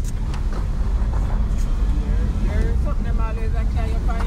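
Inside a car driving up a rough, broken hill road: a steady low rumble of the engine and tyres.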